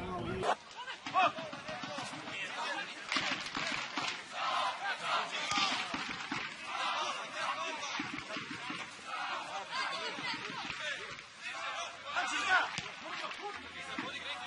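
Football crowd shouting and calling out, many voices overlapping, with no single speaker standing out.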